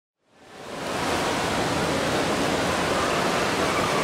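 Steady rushing din of a busy airport arrivals area, fading in over the first second.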